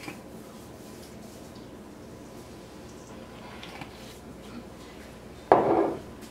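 Quiet room tone, then about five and a half seconds in a short, loud clatter of kitchenware at a stainless steel mixing bowl.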